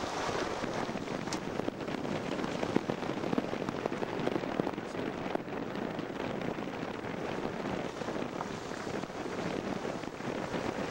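A van driving slowly on an unpaved dirt and gravel road: steady tyre and road noise with many small crackles and pops of gravel under the tyres.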